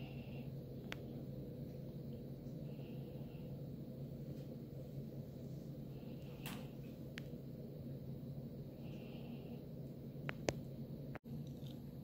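Quiet room tone: a steady low hum with a few faint, brief clicks.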